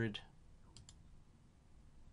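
A computer mouse button clicking twice in quick succession about three quarters of a second in, the press and release of a click on an on-screen calculator key.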